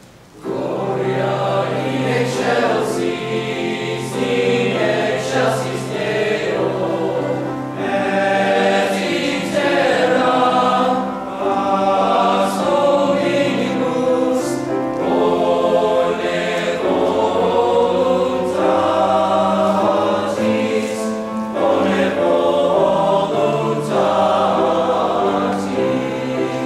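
Teenage men's choir singing sustained chords with grand piano accompaniment. The voices come in together about half a second in, after a brief pause.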